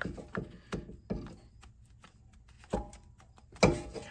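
Scattered light clicks and knocks as the electric parking brake motor housing is handled and fitted back onto the rear brake caliper, with the sharpest knock near the end.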